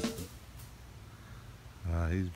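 The tail of a music track cutting off, then faint, even outdoor background with no distinct sound, and a person's voice starting near the end.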